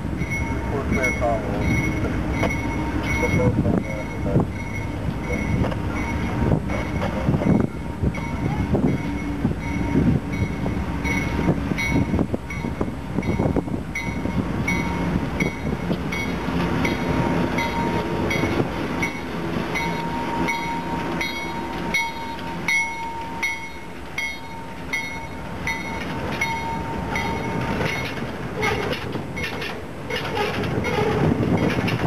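A GE C39-8 diesel locomotive passes close by, its 16-cylinder engine running, followed by box cars whose wheels click over the rail joints. A bell rings about twice a second.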